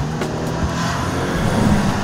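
A BMW 3 Series convertible driving past at road speed, its engine and tyres swelling louder as it goes by near the end.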